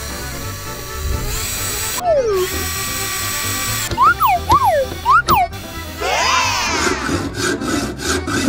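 Cordless drill whirring in two runs of about two seconds each, followed by cartoon sound effects: quick rising and falling whistles, then a burst of swooping tones near the end.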